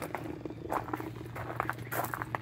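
Small aquarium air pump humming steadily while it aerates a plastic pitcher of acid-peroxide solution. Light irregular clicks and knocks come from the pitcher and its air line being handled.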